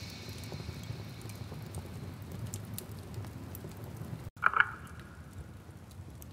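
Quiet rain-like patter with scattered crackling clicks, the kind of ambience bed laid between songs on a lofi track. The last of the previous music fades out at the start, and about four seconds in the sound drops out for an instant before a brief tone sounds.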